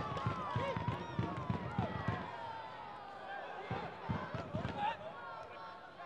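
Field sound of a football match: players' voices shouting and calling across the pitch, one long call sliding slowly down in pitch, with a few faint knocks. It all fades toward the end.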